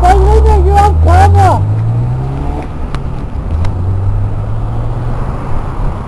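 A Volkswagen Golf's engine accelerating away, its pitch rising over the first two seconds and then holding steady. A shouted voice is heard in the first second and a half, over a low wind rumble on the microphone.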